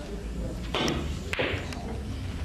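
Pool balls clacking: the cue striking the cue ball, then the cue ball hitting an object ball, two short knocks about half a second apart, roughly one second in.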